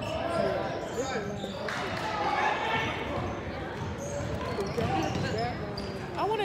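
A basketball bouncing on a hardwood gym floor during a game, with spectators talking.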